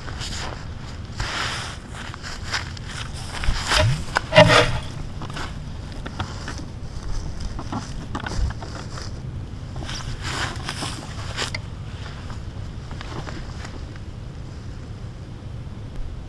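Wind buffeting the microphone outdoors: a steady low rumble with irregular louder gusts, the strongest about four seconds in.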